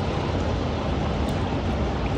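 Steady rushing noise with a low rumble from pool water being stirred as a soft bag is pushed under the surface, over the background din of an indoor pool hall.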